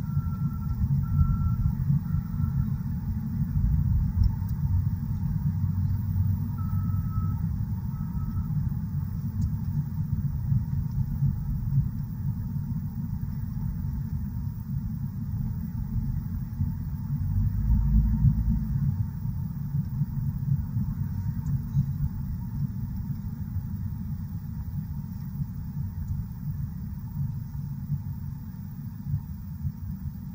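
Low, steady road rumble of a truck driving, heard from inside the cab, swelling briefly a little past the middle. A few faint short beeps sound near the start and again around seven seconds in.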